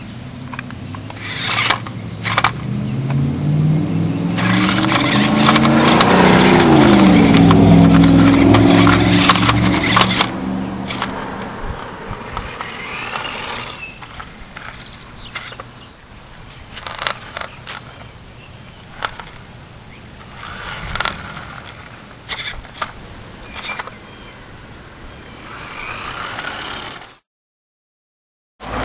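Toy RC stunt car's small electric motors whirring and its tyres scraping and clattering on concrete, loudest in the first half with the motor pitch rising and then falling. After that it runs in short, quieter bursts with scattered clicks and scrapes.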